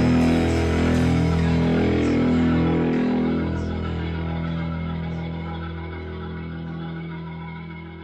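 Instrumental outro of a song: held chords ringing on and slowly fading out, the level dropping steadily from about three seconds in.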